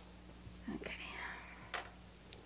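A softly spoken "okay", then a single sharp click, like a pencil or pen being set down on the table, over a faint steady low hum.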